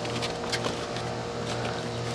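Steady mechanical hum, with a few faint light clicks about half a second in as the hard plastic parts of a booster seat's back frame are lined up and slid together by hand.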